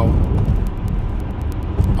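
A steady low rumble with an even noise haze, like road noise inside a moving car.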